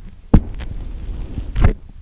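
Kinetic sand packed in a close-miked plastic cup being pressed down with a small block: two dull, low thumps, one shortly after the start and one near the end, with a soft grainy rustle of sand between.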